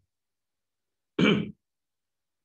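A man clears his throat once, briefly, a little over a second in; the rest is silent.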